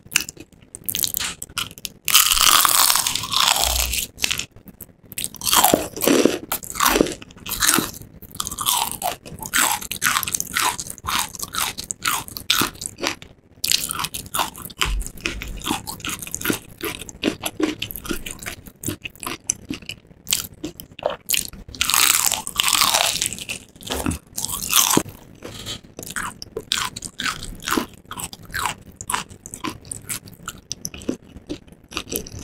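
Biting and chewing crispy breaded fried chicken, the coating crunching loudly; the heaviest crunches come about two seconds in and again around twenty-two seconds in, with quick crackling chews between.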